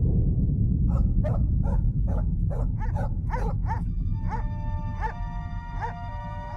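A deep rumble dying away after an earthquake, over which an animal barks in a quick run of short calls that then slow and thin out. Sustained music tones come in partway through.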